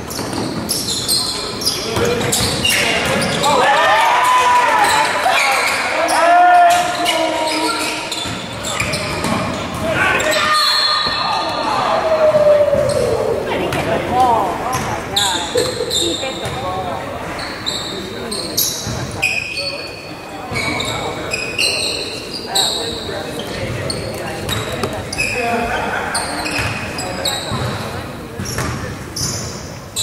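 Basketball game echoing in a gymnasium: a ball bouncing on the hardwood court, short high squeaks, and voices of players and spectators calling out.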